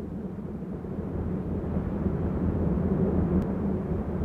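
A low rumbling drone that fades in and swells steadily louder, an ominous sound effect with no beat or melody.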